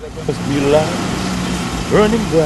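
Vehicle engine running with a steady hum, heard from inside the cab, with short snatches of voice over it.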